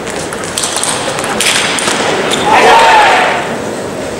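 Table tennis rally: the celluloid ball clicks sharply off bats and table several times in quick succession. About two and a half seconds in comes the loudest sound, a short loud voice call with an arching pitch.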